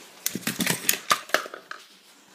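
Plastic toy lightsabers being handled: a quick run of clicks and rattles for about a second, fading near the end.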